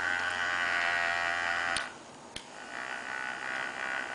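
iSkin battery-powered facial cleansing brush running with a steady motor buzz that stops with a click of its switch a little under two seconds in. After another click it starts again, running more quietly.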